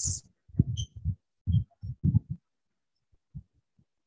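A few short, low murmurs of a man's voice, broken-off syllables with dead silence between them, as heard through the gated audio of an online video call. They fall in the first half and then stop.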